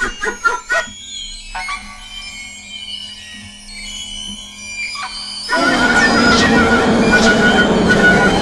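Experimental music: a few short staccato notes, then a sparse, quieter passage with sliding tones. About five and a half seconds in, a sudden loud, dense burst of noise takes over.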